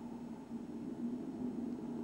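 Low, steady background hum with one faint held tone and no clear events.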